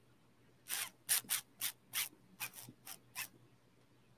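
A quick run of about ten short, soft scratchy rubbing sounds, roughly four a second, stopping about three seconds in.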